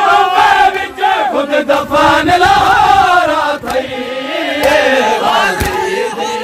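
A crowd of male mourners chanting a noha together, loud, their voices rising and falling in long lines, with a few sharp slaps cutting through.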